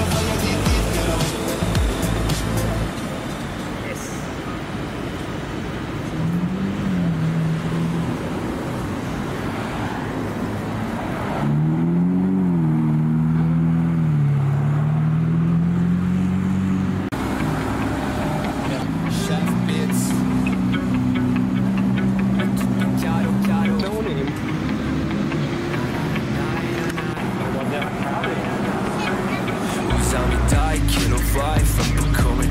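Ferrari supercars driving past, their engines rising and falling in pitch as they pass, with music playing underneath.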